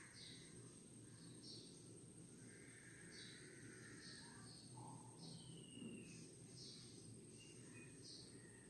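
Near silence, with faint, scattered bird chirps in the background.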